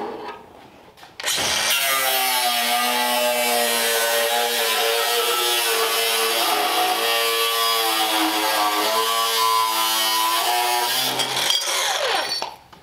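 Handheld cut-off tool running with its abrasive wheel cutting sheet-steel firewall, a steady high whine with hiss, the pitch wavering slightly as it cuts. It starts about a second in and stops just before the end.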